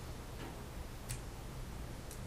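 Two small, faint clicks, about half a second and a second in, as autumn olive berries are picked off their stems by hand over a glass bowl, with a steady low hum behind.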